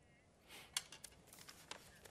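Faint studio room tone with a few light clicks and rustles of paper being handled at the presenters' table, the sharpest click a little under a second in.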